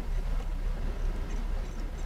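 Steady low hum and faint hiss: the background noise of the recording, with no distinct events.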